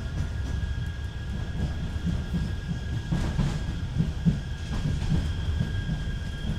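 Manchester Metrolink tram heard from inside the passenger cabin, running with a steady low rumble and a faint steady whine.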